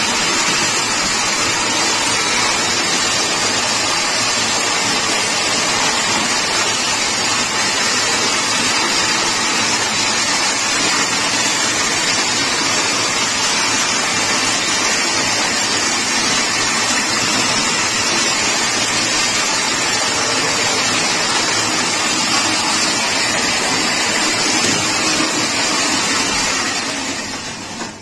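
Toroidal coil winding machine running, its ring and rollers spinning as enamelled copper wire is fed onto the ring. It makes a loud, steady whirring rush that dies away near the end.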